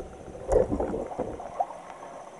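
A stainless-steel sink basket strainer being pressed and worked by hand: a sharp metal knock, a louder clunk about half a second in, then a short spell of gurgling from the drain and two small knocks.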